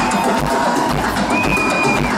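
Live synth-rock band music played over a concert PA system, heard from within the audience, with a steady beat and held melodic notes.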